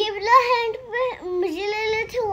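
A young girl's voice in long, drawn-out, sing-song tones, close to singing.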